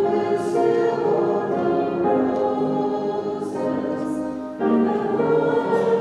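A group of voices singing a slow hymn together, holding each note before moving to the next, with a brief breath between phrases about four and a half seconds in.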